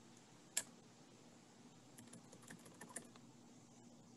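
Faint clicks from someone working a computer: one sharp click about half a second in, then a quick run of light clicks around two to three seconds in, over a faint steady hum.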